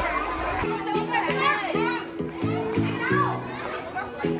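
Young children chattering and calling out together. About half a second in, music with a steady, repeating chord rhythm starts, and the children's voices carry on over it.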